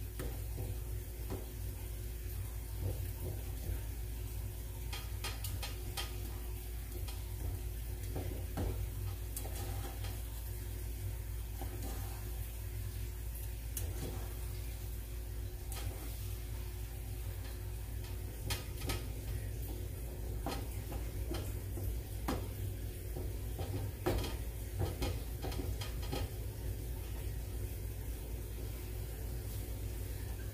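A utensil scraping and tapping against a skillet as browning ground beef is chopped into small pieces, with irregular clicks throughout and light sizzling, over a steady low hum.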